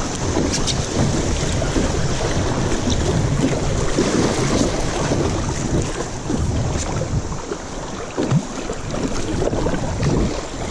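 River rapids rushing around a paddle board, with paddle strokes splashing in the water and wind buffeting the microphone.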